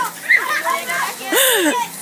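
Children shouting and squealing at play, with one loud rising-and-falling shriek about a second and a half in.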